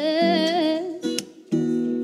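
Acoustic guitar strummed, with a voice singing a single held, wavering note over it for most of the first second. A fresh chord is strummed about a second and a half in and rings on.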